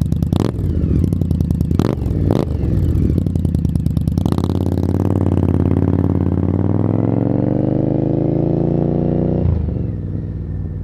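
2018 Indian Scout Bobber's V-twin with Vance & Hines exhaust, running unevenly with a few sharp cracks. About four seconds in it pulls up under acceleration, the pitch rising steadily for about five seconds, then cuts off sharply near the end as the throttle is shut or a gear is changed.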